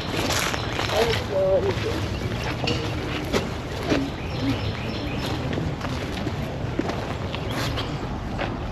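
Outdoor ambience with brief snatches of faint, indistinct voices from people walking nearby, over a steady low rumble. Scattered light knocks run through it.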